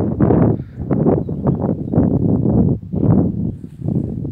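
Footsteps crunching on loose stony ground, a quick uneven string of steps, over a low rumble of wind on the microphone.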